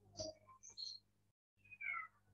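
Faint, short animal calls that slide in pitch, a few in quick succession, the last one falling in pitch near the end.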